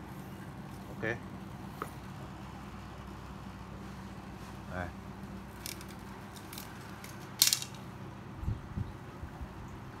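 A two-piece fishing rod handled and set down on a tiled floor: a few light clicks, then a sharp clatter about seven and a half seconds in, followed by two dull thumps, over a steady low hum.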